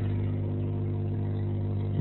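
A steady, even, low hum with several overtones, holding at one pitch and level throughout.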